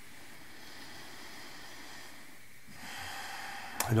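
Steady faint room hiss in a pause between sentences, then, about three seconds in, a person drawing a breath lasting about a second, ending in a short mouth click just before speaking again.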